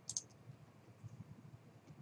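A single computer mouse click, press and release close together, about a tenth of a second in, over a faint low background rumble.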